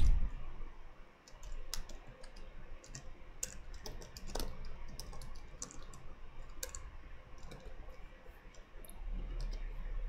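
Computer keyboard keystrokes, a scattered, irregular run of separate clicks with short pauses between them.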